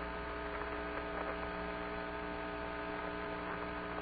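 Steady electrical hum with several fixed tones over a faint hiss: the background of the Apollo 16 astronauts' radio voice link between transmissions.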